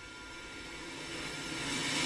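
A steady rushing noise from the animated episode's soundtrack, swelling gradually louder.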